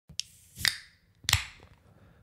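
A few sharp pops: a faint one at the start, then two louder ones about two-thirds of a second apart, each trailing off in a brief hiss.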